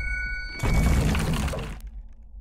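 Logo-sting sound effect: a low rumble under a glassy, shattering burst of noise that starts about half a second in and cuts off near the end, leaving the rumble to fade.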